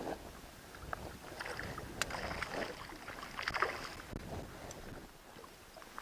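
A hooked pike splashing at the surface as it is reeled in beside a small boat, with irregular bumps and handling noise and a sharp click about two seconds in.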